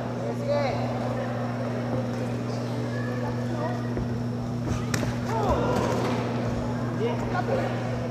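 Boxing crowd murmuring with scattered shouts over a steady low electrical hum, and one sharp smack about five seconds in.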